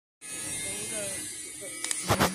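Steady buzzing hum of an idling vehicle engine, with faint voices in the background.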